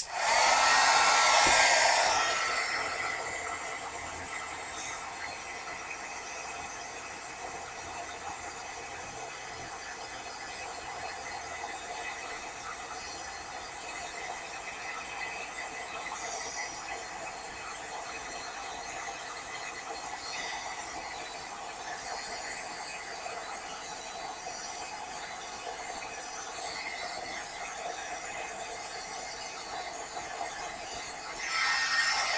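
Heat embossing tool switched on and blowing hot air to melt embossing powder on a stamped craft coin. It starts suddenly, is loudest for the first couple of seconds, then settles into a steady whirring blow.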